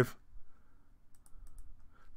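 A few faint clicks of computer keys being typed, about a second in, over quiet room tone.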